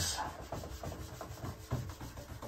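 Whiteboard eraser rubbing across a whiteboard in short, quick back-and-forth strokes, wiping off marker writing.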